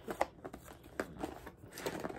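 Cardboard product boxes handled in the hands: a few light taps and scrapes as the boxes are shifted and tilted.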